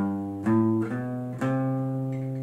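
Acoustic guitar playing a short rising run of plucked notes into a C chord: three notes struck about half a second and then a second apart, each left ringing.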